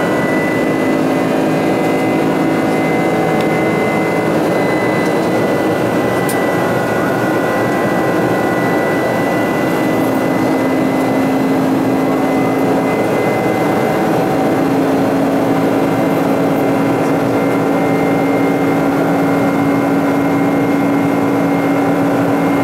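Cabin noise of a Boeing 747-400 climbing, heard inside the cabin: the steady rush and drone of its GE jet engines, with a thin high whine over it and a low hum that grows stronger in the second half.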